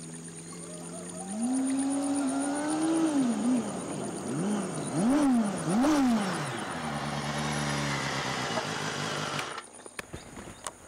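Motorcycle engine running as it rides up, revved up and down in several quick blips around the middle, then settling to a steady idle; the sound cuts off suddenly near the end.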